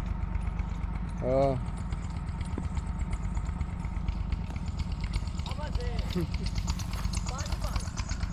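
A steady low rumble runs throughout. Over it, a single distant shout comes about a second and a half in, and faint far-off voices follow later.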